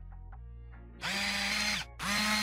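A motorised, drill-like whirring sound effect with a steady pitch starts about a second in and cuts off shortly before the end. Faint background music plays under it.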